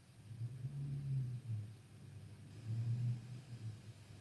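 A low rumble that swells twice, about half a second in and again about three seconds in, over a quiet room.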